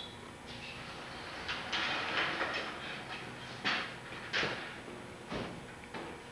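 Handling noises: a stretch of rustling about two seconds in, then three sharp knocks as objects are moved about.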